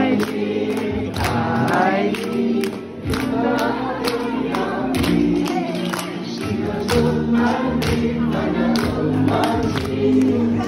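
A group of voices singing a lively Christian song together over an instrumental accompaniment, with hand clapping on the beat about two or three times a second.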